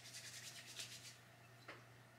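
Faint quick rubbing of palms together, spreading hair pomade between the hands, for about a second, followed by a single faint tick.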